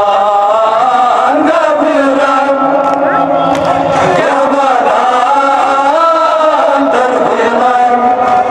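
Men chanting a noha, a Shia Muharram mourning lament, in long held melodic lines, amplified through handheld microphones.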